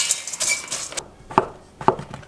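Dry flat glass noodles rustling and scraping in a stainless steel bowl as they are pressed down, with a brief metallic ring. Then two sharp knocks of a kitchen knife slicing king oyster mushrooms on a wooden cutting board.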